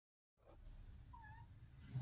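A Siamese cat in heat gives one short, faint meow about a second in, over a low rumble.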